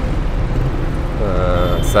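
Road traffic: vehicle engines running with a steady low rumble as a city bus and a motorcycle pass close by.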